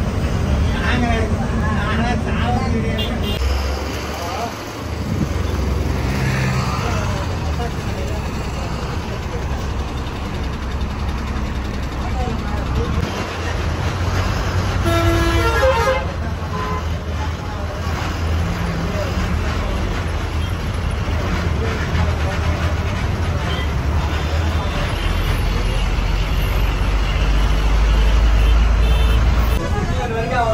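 Cabin noise inside a moving city bus: the engine running under a steady road roar. A horn toots briefly about halfway through, and the low engine rumble grows heavier near the end.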